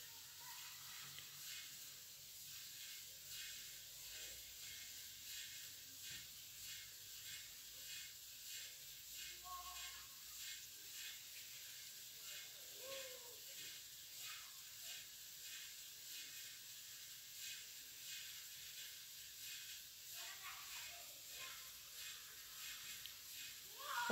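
Faint, steady hiss with a fine crackle from a creamy white sauce simmering with bow-tie pasta in a frying pan over a low gas flame.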